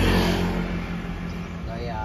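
A motor vehicle engine running with a steady low hum, a little louder in the first half second. A short burst of speech comes near the end.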